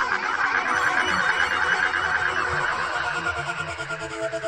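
Goa trance electronic music in a beatless passage: a swirling, warbling synthesizer texture of bubbling, gliding squiggles, slowly getting quieter.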